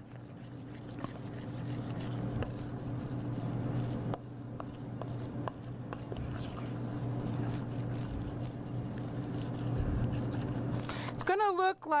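Spoon scraping and stirring thick cake batter in a stainless steel mixing bowl, with many small clicks against the metal. Milk and melted butter are being worked into the flour and sugar, thinning it toward a crepe-like batter. A steady low hum runs underneath.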